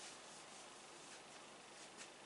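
Near silence: faint room hiss with the soft rubbing of a marker on a whiteboard, and a small tap near the end as the pen meets the board.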